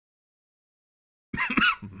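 Dead silence, then about a second and a half in a man's voice saying a word.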